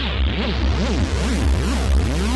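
Novation Supernova synthesizer holding a sustained note with a deep bass. Its filter cutoff sweeps up and down about two to three times a second as recorded filter-cutoff automation plays back.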